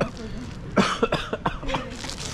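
A man coughing, a sharp cough followed by a few shorter breathy coughs mixed with laughter, as the fine matcha powder coating the ice cream catches at the back of his throat.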